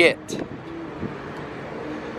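Steady outdoor background noise with no distinct event, after the tail end of a spoken exclamation at the very start; a few faint voices in the background.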